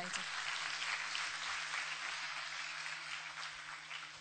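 Audience applauding, a dense patter of many hands clapping that thins out toward the end.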